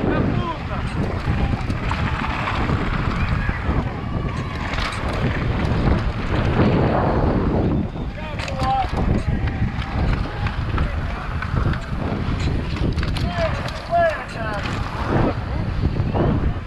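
Wind rushing over a helmet-mounted action camera's microphone as a mountain bike rides fast down a dirt slalom track, with the tyres rumbling over the dirt and scattered knocks and rattles from the bike over bumps.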